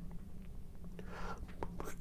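Quiet pause in a man's speech: a faint steady low hum, a soft intake of breath about a second in, and a few small mouth clicks.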